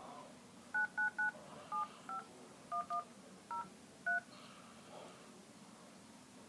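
iPhone Phone-app keypad sounding DTMF touch tones as nine digits are dialled: short two-tone beeps, three in quick succession, then singles and a pair. The tones spell out 9-9-9-7-5-1-1-0-3.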